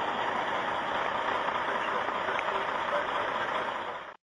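Steady rumble and hiss of idling emergency vehicles, a fire engine and a van, fading out at the very end.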